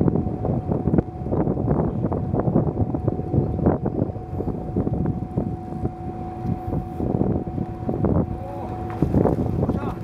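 A small fishing boat's engine running, with a steady hum and a second, lower tone joining for a few seconds past the middle, under wind rumbling on the microphone.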